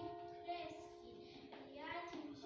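A group of young children singing together, with steady instrumental accompaniment underneath.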